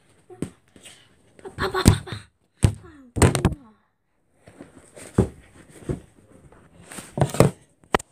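Padded boxing gloves being knocked together: a run of dull thumps and knocks, several in a row, with a pause of about a second near the middle.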